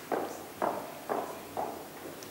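Footsteps at an even walking pace, about two steps a second, each a short sharp knock.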